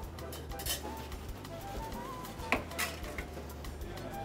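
A few light clinks and taps of utensils and food against ceramic bowls and plates as dishes are plated, the sharpest about two and a half seconds in, over soft background music.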